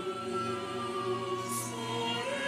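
Small mixed ensemble of men's and women's voices singing a Portuguese Christmas hymn in held notes with vibrato, with a short hissed 's' about one and a half seconds in.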